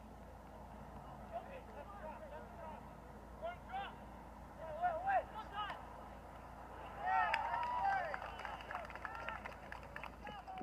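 Voices shouting at a soccer match: scattered calls at first, then several voices yelling together about seven seconds in, the loudest part.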